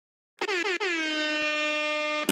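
Intro sound effect on the show's title card: a single loud horn-like note that slides down in pitch and then holds steady for about a second and a half, after a brief silence.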